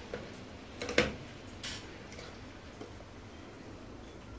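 Small metal shaving-soap tins being handled, a few light clinks and knocks with the sharpest about a second in.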